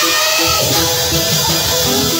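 Live praise and worship band playing, with electric guitar and keyboard.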